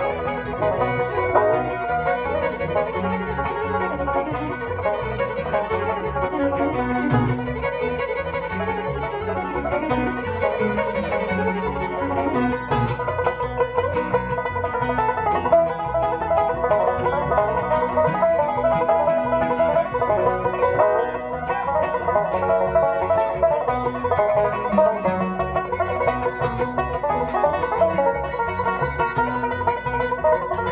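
Bluegrass band playing an instrumental live, with fiddle and banjo to the fore over a steady rhythm.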